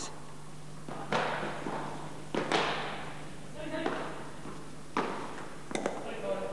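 Padel rally: the ball knocking off paddles and the court, four sharp hits with a short echo from the hall, at about one second, two and a half seconds, and two close together near the end.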